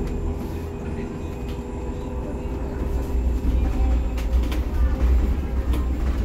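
Cabin noise inside a SOR NS 12 electric city bus under way: a low road rumble with a steady hum and occasional knocks and rattles. The rumble grows louder about halfway through.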